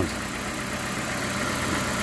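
2002 Ford Escort ZX2's 2.0-litre four-cylinder engine idling steadily, heard close over the open engine bay.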